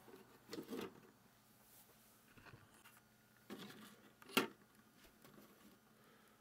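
Light knocks and clicks of a small 3D-printed plastic garbage can being handled and turned on a wooden desk, with a sharper click about four seconds in.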